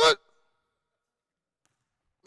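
A man's voice speaks one short word at the very start, then near silence.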